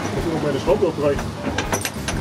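A quick run of sharp clicks near the end from a ratchet tie-down strap being tightened to pull the motorcycle's suspension down for transport.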